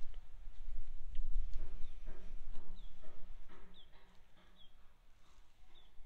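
Footsteps on a wooden boardwalk, about two a second, each with a hollow knock of the deck boards, growing fainter after about four seconds. A low wind rumble runs on the microphone underneath.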